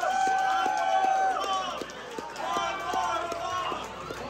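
Live heavy psych-rock band playing: a high lead line holds one long note, then breaks into shorter bending notes, over a steady drum beat.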